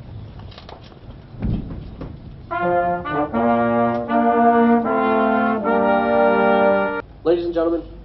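Brass band playing held chords as musical honors to the national colors. The music comes in about two and a half seconds in and cuts off abruptly about a second before the end.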